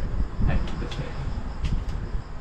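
Air blown into a clarinet that does not speak: a low, breathy rush with a few faint clicks and no note at all. The reed is not sounding, the usual trouble of someone who cannot yet get the first note out of a clarinet.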